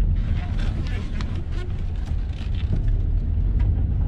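Cabin noise of a Mazda 3 SP25 on the move: a steady low rumble from its 2.5-litre four-cylinder engine and the tyres on the road.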